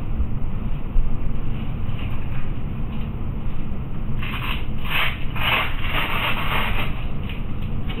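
Hook-and-loop (Velcro) fasteners on a TLSO back brace being pulled apart: a quick run of short rasping rips in the second half, over a steady low rumble.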